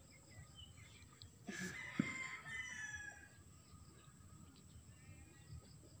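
A faint, drawn-out animal call with several pitched tones in the background, lasting about a second and a half from about one and a half seconds in, with a short knock near its start. The rest is low background noise.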